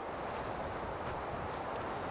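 Steady outdoor background noise, an even hiss with no distinct events.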